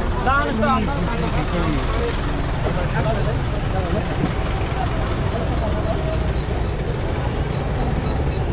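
Roadside traffic noise at a bus stop: a loud, steady low rumble, with people's voices talking in the first two seconds.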